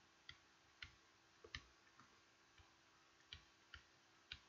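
Near silence broken by about six faint, light clicks at irregular intervals, two in quick succession about a second and a half in: the tip of a stylus tapping a pen tablet while handwriting.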